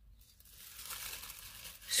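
A thin plastic shopping bag crinkling as it is handled and bunched up in the hands, starting about half a second in.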